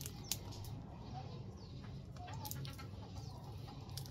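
Quiet background with a low steady hum, two short faint bird chirps, and a few light clicks as a plastic glue bottle is squeezed onto a branch.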